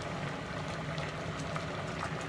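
Pot of spaghetti boiling steadily on a gas stove, with a low steady hum underneath.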